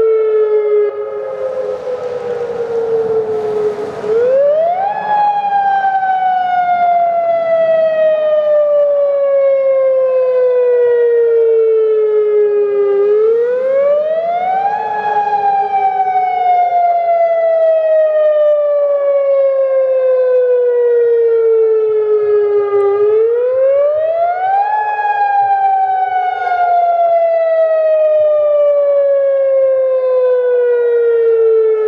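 Civil-defence tsunami warning siren wailing, sounded for a major earthquake: its pitch rises quickly, then falls slowly over several seconds. The cycle repeats about every ten seconds, with three rises in all.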